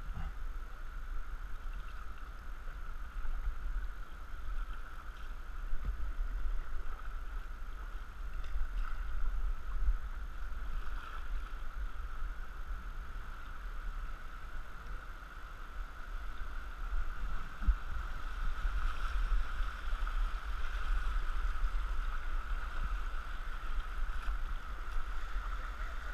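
A canoe running fast water: a steady rush of river current around the hull, a little louder toward the end as the water turns rougher.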